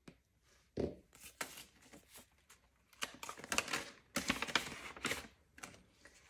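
Paper banknotes and a ring-bound cash-envelope binder being handled: a soft thump about a second in, then a run of crisp rustling and crinkling as bills are put away and the binder's pages are turned.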